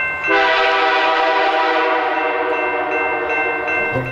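Locomotive air horn sounding one long, steady blast of nearly four seconds as a train approaches a grade crossing: the warning for the crossing.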